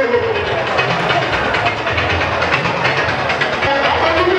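Loud, dense crowd noise mixed with music in a packed hall, with many quick percussive strokes and voices throughout.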